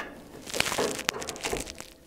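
Steel snow-plow mount frame being shifted and worked into position by hand: a rough scraping from about half a second in, with a sharp click about a second in.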